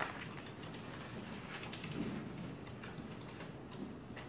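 Faint room noise with scattered small clicks and rustles, and a soft low bump about two seconds in.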